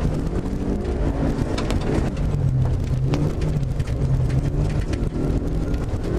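Rally car engine running under load, heard inside the cabin while driving a snowy stage, its note rising a little about two seconds in and falling back near the end. Tyre and road noise with scattered short knocks runs underneath.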